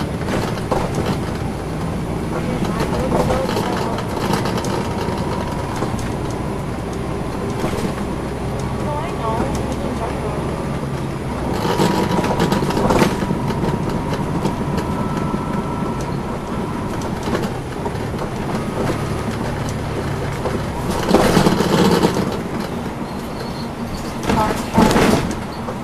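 Interior of a moving 2010 NABI 40-SFW transit bus: its Cummins ISL9 diesel engine running under way with steady road noise and a faint whine. The noise swells louder twice, about halfway through and near the end.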